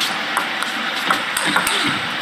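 Table tennis rally: the celluloid-type plastic ball clicking sharply off the rubber paddles and the table in quick, irregular succession.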